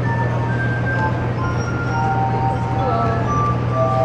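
Glass harp: a set of water-tuned wine glasses played by rubbing the rims, giving pure, sustained ringing notes that overlap as a slow melody moves from pitch to pitch. A steady low hum runs underneath.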